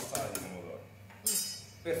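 Metal serving spoon being put down after stirring a sauce in a stainless saucepan, with a brief metallic clink a little over a second in.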